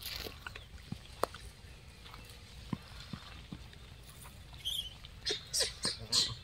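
Gray langurs feeding on dry open ground: scattered light clicks and rustles. Near the end come a brief high squeak and a few short scratchy sounds.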